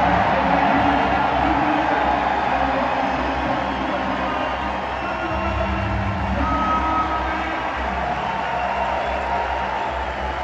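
Music over the arena's public-address system mixed with a large crowd cheering, steady throughout.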